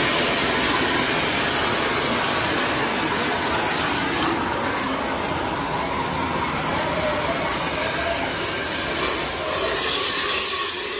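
Steady, loud rushing noise from a phone video of a burning hospital elevator, the fire scene's din picked up by the phone's microphone.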